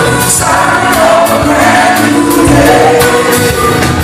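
Live band music: a male lead voice singing with backing voices over electric guitar and a steady drum beat.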